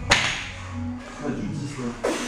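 Loaded barbell with rubber-coated plates knocking during deadlift reps: a sharp clack just after the start and another just as it ends, with music playing underneath.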